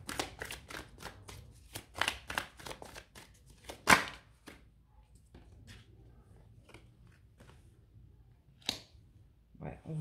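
A deck of oracle cards being shuffled by hand: quick runs of card clicks over the first four seconds, ending in one sharp loud snap, then a few scattered taps as a card is drawn and laid on the table.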